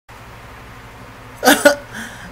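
A steady low hum, then about one and a half seconds in a man's short vocal sound in two quick pulses.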